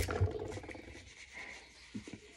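Hands rubbing and rustling against a small cardboard medicine box and paper tissue, with a soft knock just after the start, then a fainter scratchy rub.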